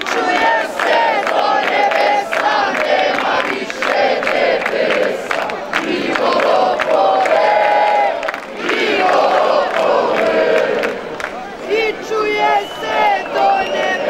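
Large crowd of marchers, many voices shouting and chanting at once, loud and continuous with a few brief dips.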